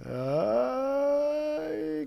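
A person's voice holding a long, drawn-out "uhh", sliding up in pitch over the first half second and then held on one steady note until near the end.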